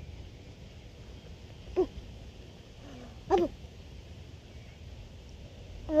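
A girl's voice saying "boom" twice in short, low, falling calls, about two seconds in and again a second and a half later, over a steady low rumble.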